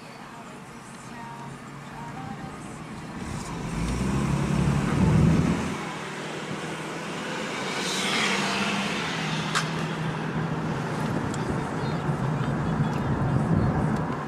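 Engine and road noise of a Ford Mustang convertible driven with the top down. The engine note swells as it pulls away about four seconds in, then settles into a steady cruise, with open-air wind and passing traffic around it.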